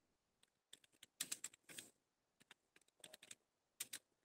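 Computer keyboard being typed on: faint key clicks in short, uneven runs, a little louder around a second in and near the end.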